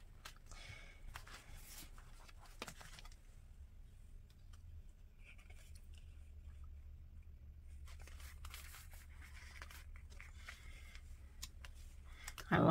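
Faint paper rustling and soft clicks as the pages of a sticker book are turned, over a low steady room hum.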